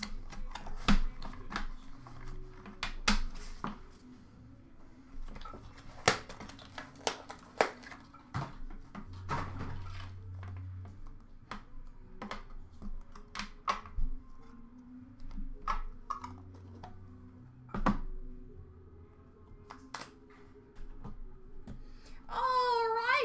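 Irregular clicks, taps and rustles of a cardboard trading-card box and its packs and cards being opened and handled by hand over a plastic bin.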